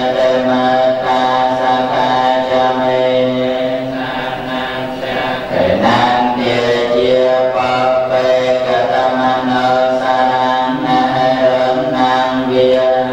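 Buddhist monks chanting together in unison through a microphone, on long held notes at a steady pitch. About halfway through, the chant breaks briefly with a downward slide before it resumes.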